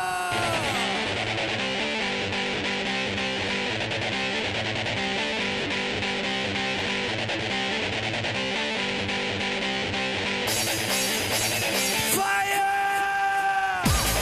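Loud music with a steady beat. A held, pitched tone slides down in pitch just after the start, and comes back about two seconds before the end, sliding down again as the track changes.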